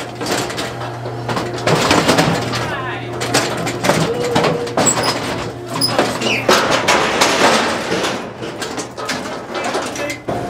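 Indistinct voices talking, over a steady low hum that stops about six and a half seconds in.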